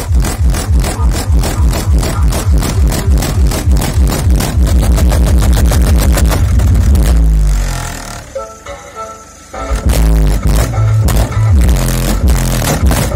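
Loud electronic music with heavy bass from a car-audio SPL system: a Hertz SPL Show subwoofer driven by a Hertz SPL Monster MP15K amplifier. It has a fast pounding beat, eases into a quieter break about eight seconds in, and the beat comes back near ten seconds.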